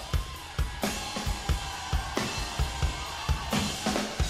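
Rock drum kit played live with a full band: steady bass drum beats under snare hits and several crashing cymbal strokes, the singing having stopped.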